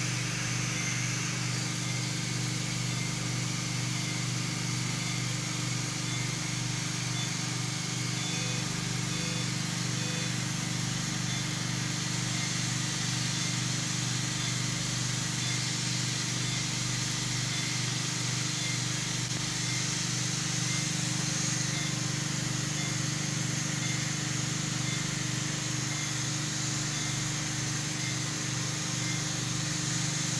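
Steady hum and hiss of running endoscopy equipment: fans and pumps in the endoscope tower. Faint short beeps sound about once a second from a patient monitor.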